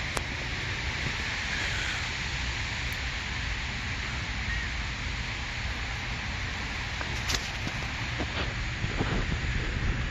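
Steady outdoor background hiss, with a few faint clicks in the second half.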